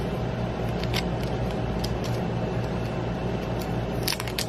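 A few light clicks and taps from the small plastic DJI Action 2 camera unit being handled in the fingers, over a steady low hum.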